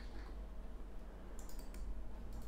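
A few quick, faint clicks of a computer mouse in the second half, over a low steady hum.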